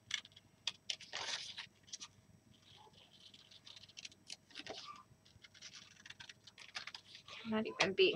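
Small scissors snipping scrapbook paper and sheets of paper being handled and rustling, with scattered sharp clicks and a short burst of rustling about a second in.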